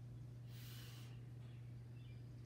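A short breath drawn in through the nose about half a second in, over a steady low hum.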